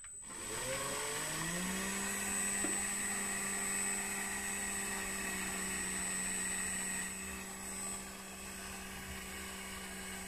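Electric motor and geared transmission of a Tamiya 1/14 6x6 RC truck running with its wheels in the air: a whine that rises in pitch over the first second or two, then holds steady, with a thin high tone above it. It gets slightly quieter about seven seconds in.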